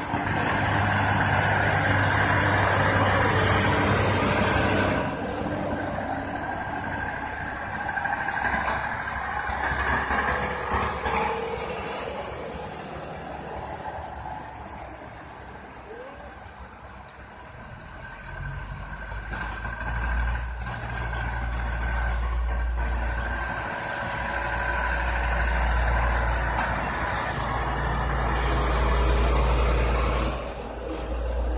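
Loaded diesel dump trucks driving past, loudest in the first five seconds as the nearest truck goes by. Then quieter engine noise as the trucks move off, with a deep low rumble coming and going in the second half.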